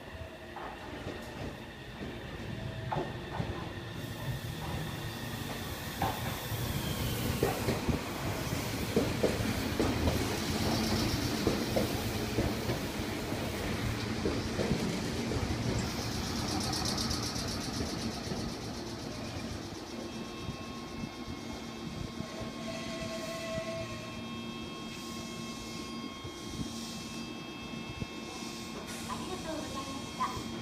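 Meitetsu 2200-series electric train pulling into a station: wheels rumble and clatter over the rail joints, loudest about a third of the way in as the cars run past, then the sound eases as it slows to a stop. In the last third, steady humming tones continue from the standing train.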